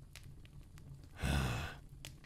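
A man sighs once, a short breathy exhale with a low voiced start, a little past halfway through.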